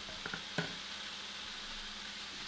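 Chicken and vegetables frying in a pan on the stove, a steady soft sizzle, with a few light clicks in the first second.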